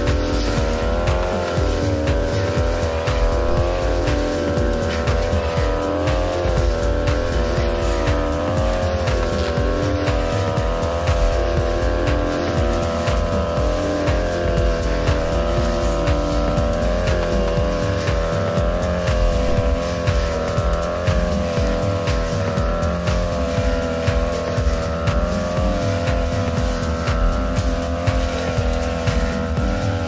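Backpack brush cutter engine running at high revs, its pitch wavering slightly as the long 45 cm blade cuts through young grass.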